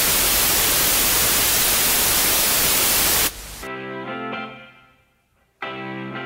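Television static hiss, a loud steady rush of white noise that cuts off suddenly about three seconds in. A brief stretch of music follows and fades away, and after a short silence music starts again near the end.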